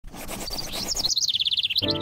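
A songbird singing, first a quick rising note and then a rapid trill of repeated high notes, over a noisy background. Soft sustained music comes in just before the end.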